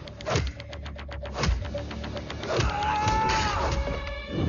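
Action-film soundtrack: heavy drum hits over a held drone note, with a quick run of clicks about half a second in. Late on, a whining tone swells and then fades.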